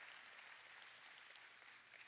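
Near silence: a faint, even hiss of room tone, with one tiny tick about a second and a half in.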